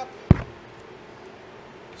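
A single short, sharp thump about a third of a second in, then only faint background hum.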